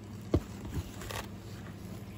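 Handling of a cardboard shipping box: one sharp knock about a third of a second in, then a few faint light rustles.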